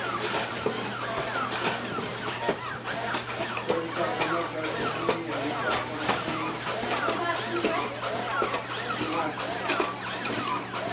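A toy humanoid robot making a continuous run of warbling electronic chirps and garbled robot-voice sounds, with frequent sharp clicks throughout.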